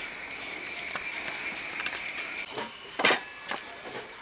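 Insects chirring steadily at a high pitch, which stops abruptly about two and a half seconds in; a brief short noise follows about three seconds in.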